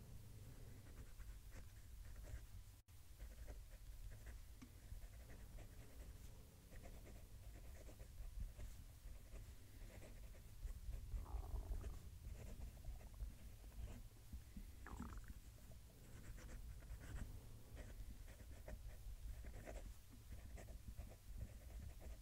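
Leonardo Furore fountain pen's 1.1 mm Jowo stub nib writing a sentence on paper: faint scratching in many short strokes, a little louder about halfway through.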